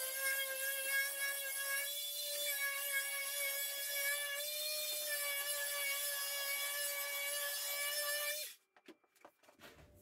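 Electric orbital sander running steadily with a high whine over a finished wooden panel, smoothing the cured coat of finish, then switched off abruptly about eight and a half seconds in.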